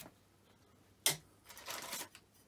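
Workshop handling noise: one sharp knock about a second in, then a brief rustle near the end.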